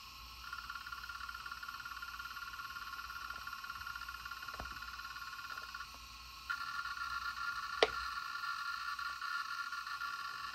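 Conner CP2045 2.5-inch hard drive with stuck heads, its spindle motor buzzing as it tries and fails to spin up: a steady hum that stops briefly around the middle and then starts again. A single sharp click comes a little after the hum resumes.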